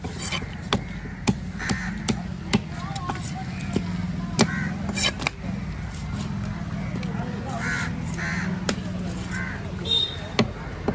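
A heavy knife strikes a wooden log chopping block in sharp knocks at irregular intervals as a red snapper is cut up. Crows caw repeatedly over a steady low background hum.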